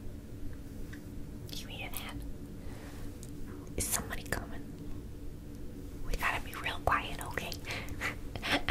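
A woman whispering close to the microphone in a few short, unintelligible spells, about a second and a half in, around four seconds in and again near the end, over a faint steady hum.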